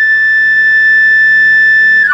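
A loud, steady high-pitched tone held over the hall's sound system, the held opening note of the dance's music track, which drops in a few quick steps as the music begins.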